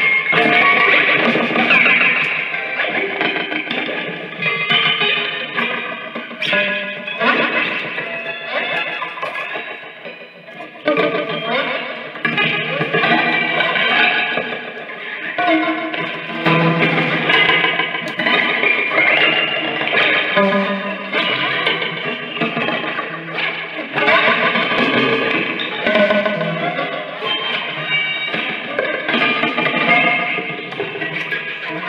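Amplified prepared electric guitar laid flat and played with small objects worked against the strings near the bridge, giving dense, layered metallic tones in a free improvisation. The sound thins out briefly about ten seconds in, then builds back up.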